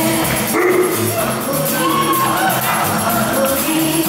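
A woman singing a Bollywood song live into a handheld microphone, over band accompaniment with drums.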